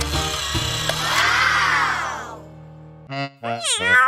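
Children's-show sound effects over background music: a sweeping swish for the first two seconds that fades away, then short gliding pitched cries near the end.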